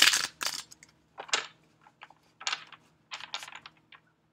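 A deck of tarot cards being shuffled by hand: a fast ripple of cards ends just after the start, then a run of separate short, sharp card snaps and taps follows as the deck is handled.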